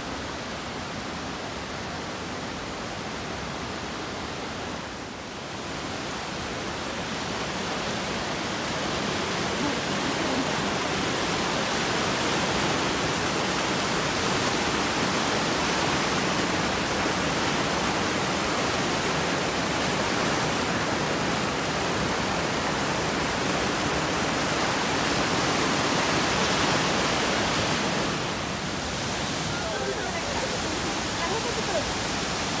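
River water rushing and churning over rock ledges and through a rock channel: a steady rush of water that dips briefly and then grows louder a few seconds in.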